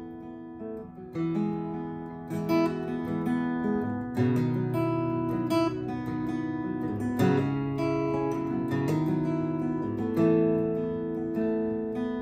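Acoustic guitar played alone, a slow run of chords with new chords struck every second or so; it starts quietly and comes in fuller after about a second.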